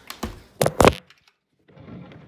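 Three sharp thunks in quick succession in the first second, the last two the loudest. They come from a phone being handled and knocked about. The sound then cuts out briefly.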